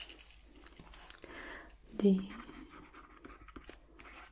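A woman's soft voice speaking a single word about halfway through, with faint breaths and small clicks around it.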